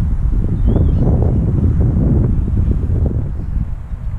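Wind buffeting the camera's microphone: a loud, low rumble that gusts strongest over the first two seconds and eases toward the end.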